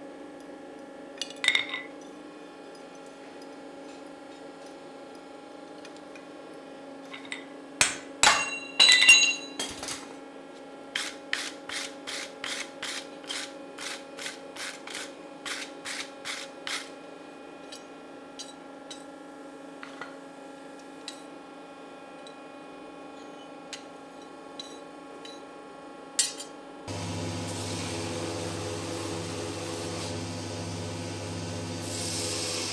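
Hammer blows on a hot steel axe head on an anvil: a few heavy strikes, then a run of about a dozen lighter, even strikes at about two a second, over a steady low hum. Near the end a belt grinder starts up with a steady, louder grinding noise.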